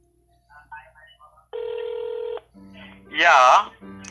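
One burst of telephone ringing tone heard over the phone line: a steady tone about a second long, the ringing of a call on hold while it is being transferred to an agent. A man's voice follows near the end.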